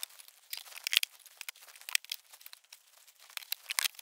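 Wooden beehive frames being slid into and pushed together in a national deep hive box: an irregular run of short dry scrapes and light clicks of wood on wood.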